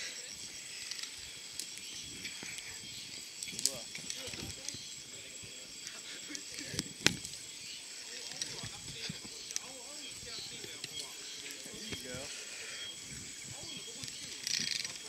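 Scattered clicks and knocks of gear and camera handling, with one sharp click about seven seconds in, over a steady high-pitched hum and faint voices.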